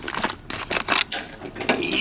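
Rapid, irregular clicks and rattles of handling noise as the camera is picked up and moved, dense for about a second, then a lighter scrape.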